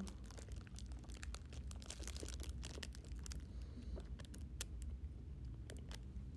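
A thin clear plastic bag crinkling and crackling as it is handled around food. The crackles are dense for about the first three seconds, then thin out to occasional ones.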